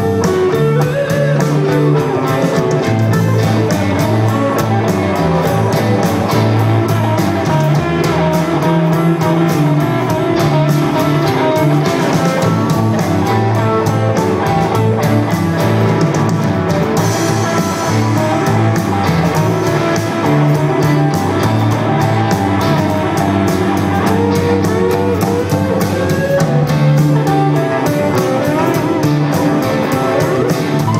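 A live band playing an instrumental passage of a blues-rock song: electric guitars over bass and drums, with a keyboard on stage, going steadily throughout.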